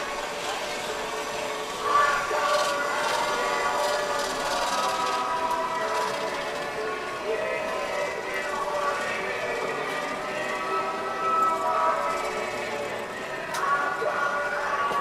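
Indistinct voices of people talking, not close enough to make out words, over steady outdoor background noise.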